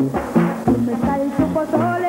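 Band music with brass and drums in a lively instrumental passage, over a bass line stepping back and forth between two notes.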